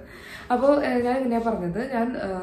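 A woman speaking, after a short pause of about half a second at the start.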